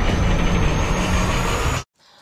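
Loud rush of rough, crashing water over a heavy low rumble, cutting off abruptly to silence near the end.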